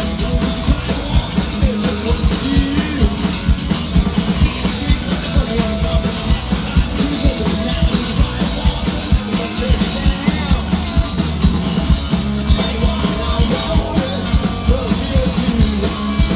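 Live hard rock band playing at full volume: electric guitars, bass and a driving drum beat, with a male lead singer.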